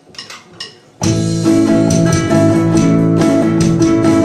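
A few light, evenly spaced ticks, then a band comes in together about a second in: electric and acoustic guitar, bass, piano and drums playing the opening of a song, loud and steady.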